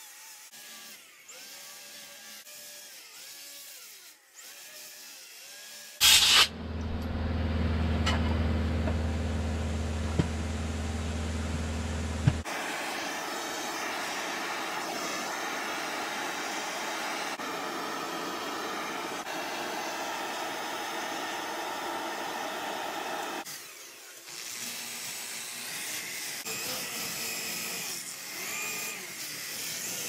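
Finishing tools working a wood carving in turn: a handheld grinder whining against the wood for the first few seconds, then a propane torch burning with a loud, steady rush as it scorches the carving's surface, then a drill spinning a brush over the charred wood near the end.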